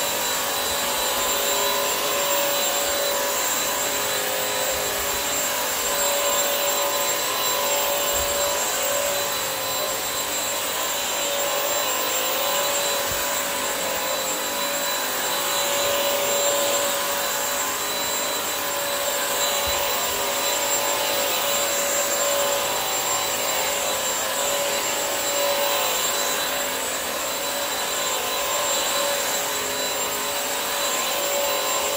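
Bissell CrossWave wet-dry vacuum mop running while it mops a tile floor: a steady whine over an even rush of suction, swelling a little as it is pushed back and forth.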